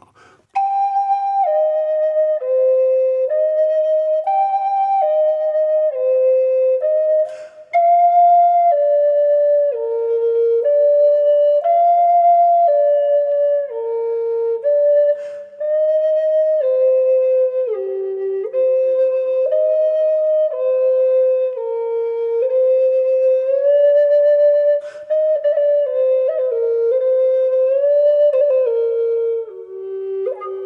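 G minor Native American flute playing a slow, legato warm-up of three-note chord phrases, one clear note at a time, working back down the scale with a few brief pauses between phrases.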